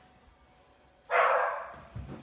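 A dog barks once, loud and sudden, about a second in.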